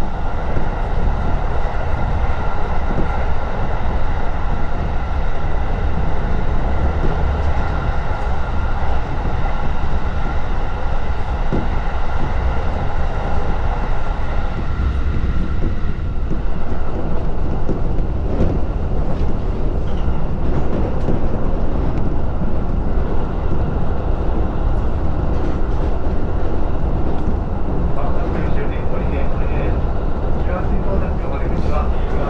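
Electric commuter train running at speed, heard inside the passenger car: a steady low rumble of wheels on rails with a constant high hum that fades about halfway through.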